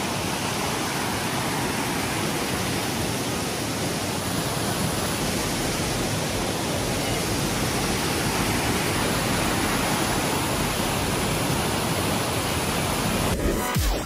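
Waterfall: white water cascading over rocks, a steady rushing noise of water with no break.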